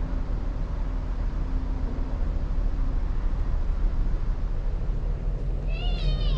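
Steady low outdoor rumble, with a faint hum in its first half. Near the end comes one short, high, wavering call, like a bird's.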